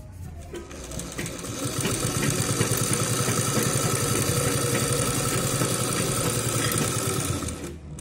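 Domestic sewing machine stitching through fabric: it speeds up over the first couple of seconds, runs at a steady fast stitch, and stops shortly before the end.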